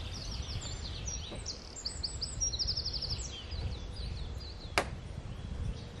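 A songbird sings a run of quick, high notes with a rapid trill, over a steady low rumble. Near the end comes a single sharp knock, as gear is handled in the wooden shelter.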